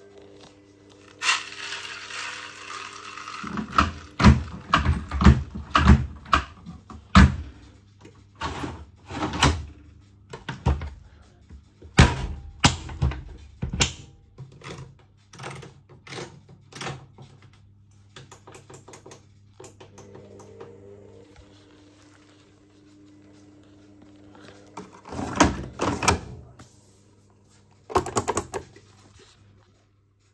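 Zanussi ZWT71401WA front-loading washing machine in its anti-crease phase: a steady motor hum as the drum turns slowly with the towels stuck to it. Over it come runs of irregular knocks and clunks, a dense run in the first half and another cluster near the end.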